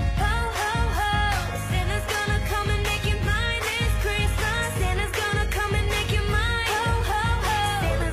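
A pop Christmas song: a solo voice sings over a band with a steady beat.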